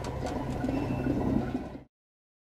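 Steady background noise with a low hum under it, cut off suddenly near the end.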